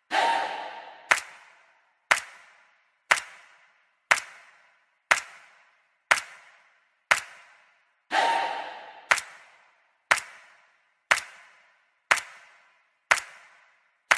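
Edited-in sound effect: a sharp click with a long echoing tail, repeating evenly about once a second, with a swelling whoosh at the start and again about eight seconds in.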